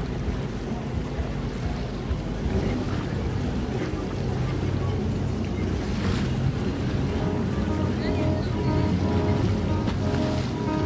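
Wind buffeting the microphone over open water, with a low steady rumble of boat motors. Music with held notes fades in over the last two seconds.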